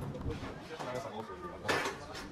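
Low, indistinct voices of a group of young people walking along a street, with a short noisy burst near the end.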